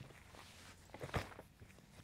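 Faint handling noise of fabric sleeves being picked up and moved on a table, with a few soft knocks a little after a second in, the strongest a dull thud.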